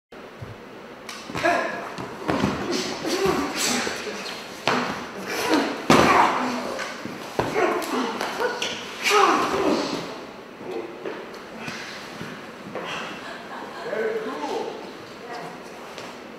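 Stunt fight rehearsal on floor mats: bodies and feet thudding onto the mats in several sharp impacts, with shouts and grunts of effort from the performers.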